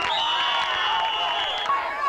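A referee's whistle blown once, a single steady high note about a second and a half long, over a crowd of spectators talking and shouting.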